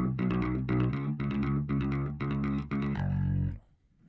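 Isolated bass guitar stem from a multitrack: steady, evenly repeated picked notes, quickly muted, with a chorus effect. It is heard through a mid-range EQ boost that is swept upward. Playback stops about three and a half seconds in.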